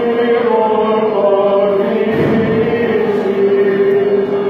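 Greek Orthodox Byzantine chant sung by voices in a large, echoing church, long held notes moving slowly from pitch to pitch.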